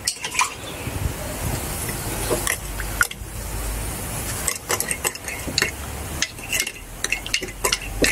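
A pipette stirring a freshly mixed acid etching solution in a ceramic mug, tapping and clinking against the inside of the mug in quick, irregular strokes.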